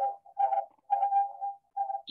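A steady whistle-like tone held at one pitch, coming in three short stretches with brief gaps, from a call participant's unmuted microphone.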